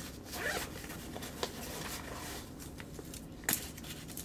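Zipper on the front pocket of a Speck AftPack backpack being pulled open in scratchy strokes, with one sharp click about three and a half seconds in.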